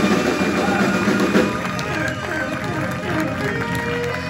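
A live jazz-funk band plays: saxophones carry the melody over upright bass and drum kit.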